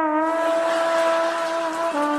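Short musical scene-change cue: one long held note, dipping slightly in pitch at its start, that steps to a new note right at the end.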